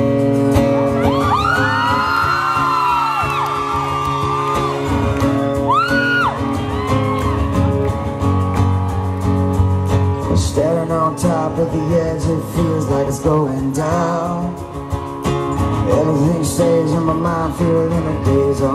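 Live rock band playing a song's instrumental intro on acoustic guitar and electric bass, starting abruptly. High whoops from the audience rise above the music a second or two in and again about six seconds in.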